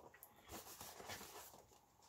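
Near silence, with faint handling noise from a cardboard harmonica package being opened.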